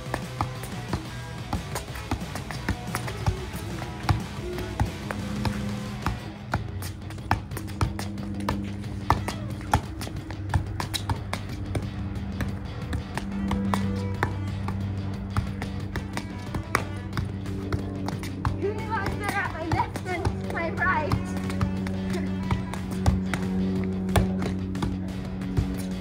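Soccer ball being juggled with the left foot, a long run of short taps as the foot meets the ball, over steady background music.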